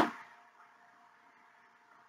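A single sharp knock at the very start, dying away within about half a second, followed by faint room tone with a thin steady hum.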